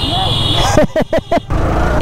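Motorcycle engine running with road and wind noise as the bike rides along, under short bits of a rider's voice. A high steady tone sounds for under a second at the start.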